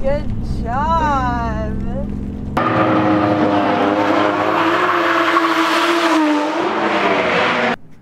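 Inside a drift car's cabin, the engine runs under a voice exclaiming for about two and a half seconds. Then a sudden change to a drift car heard from trackside: the engine is held high and wavers while the tyres screech in a long slide. It stops abruptly near the end.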